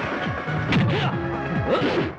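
Dubbed film-fight punch and hit sound effects, a few sharp whacks, over a loud action background score.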